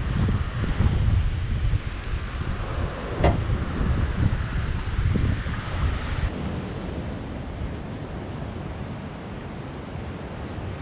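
Wind buffeting the microphone in gusty rumbles over the wash of surf from the beach below, with a brief knock about three seconds in. About six seconds in the sound cuts suddenly to a quieter, steadier hiss of wind.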